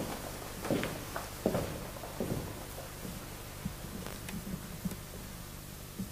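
Footsteps of a person walking away across the room: a few dull thumps in the first two and a half seconds, then fainter scattered clicks, over a steady low hum and hiss.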